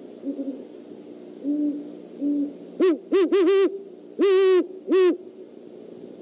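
Great horned owl hooting: a few soft, low hoots in the first half, then a louder series of about six hoots from about halfway, one of them drawn out longer than the rest.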